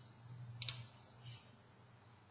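Faint computer mouse clicks, a quick double click about two-thirds of a second in and a softer click later, over a low steady hum.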